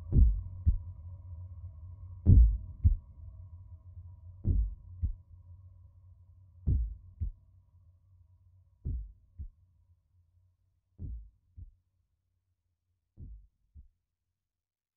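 A heartbeat sound in a music track: slow paired low thumps, one pair about every two seconds, growing steadily quieter. Under the first half, a low sustained drone with faint held tones fades away.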